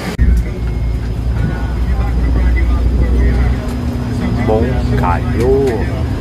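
Bus engine and road noise heard from inside the cabin while driving: a steady low rumble that eases off about halfway through.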